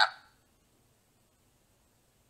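A spoken word trails off at the very start, then near silence: faint room tone.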